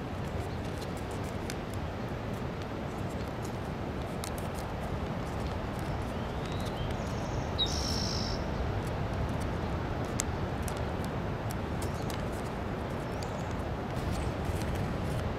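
Kami origami paper being creased and folded by hand: faint scattered crinkles and clicks over a steady low outdoor rush. A short high bird chirp sounds about seven to eight seconds in.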